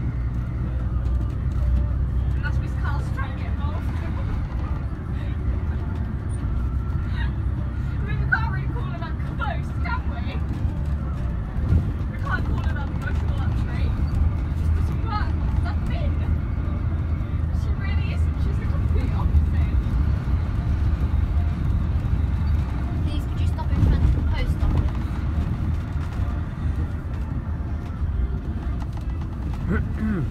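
Inside a moving VDL Bova Futura coach: the engine's steady low drone and road noise, a higher hum in it falling away about six seconds in. Faint passenger chatter runs underneath.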